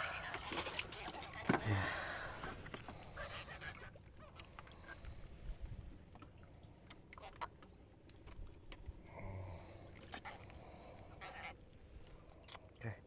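A small fish being landed by hand into a wooden boat: a splashy scuffle in the first two seconds, then scattered light clicks and knocks of line and hands against the boat, with brief vocal sounds.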